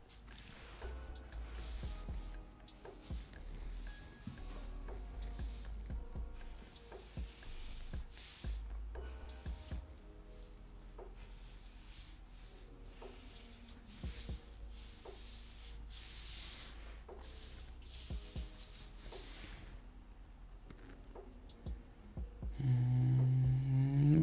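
Felt-tip marker strokes rubbing across paper, a second or so each, over soft background music. A low hum starts near the end.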